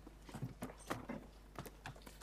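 A scatter of soft, irregular clicks and taps, about eight in two seconds, over faint room hum.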